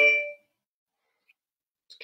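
A bell-like chime rings out and fades away within the first half second, then there is near silence until a man's voice begins near the end.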